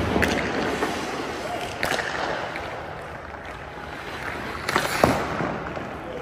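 Ice skate blades scraping and carving on rink ice, with a short, louder scrape about five seconds in.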